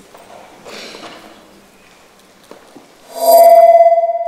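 Quiet hall noise, then about three seconds in a loud, bright chime strikes and rings on with a wavering, shimmering tone, like the opening sting of a title sequence.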